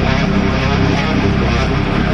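Metal song with its drums removed: loud, dense distorted electric guitars over bass guitar, with no drum kit in the mix.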